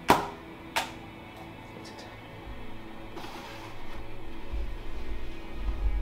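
Two sharp clicks about two-thirds of a second apart: a large-format lens shutter set to time being opened and then closed for a portrait exposure. After them comes faint background music, with a low rumble building toward the end.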